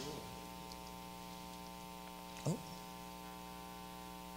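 Steady electrical mains hum in the microphone and sound system during a pause in the speech, with one brief rising squeak about halfway through.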